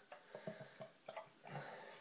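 Faint sounds of lager being poured from a bottle into a glass: a few soft glugs and light clicks.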